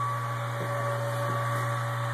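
Small electric brewing pump running with a steady hum and hiss as it recirculates hot wort through a plate wort chiller.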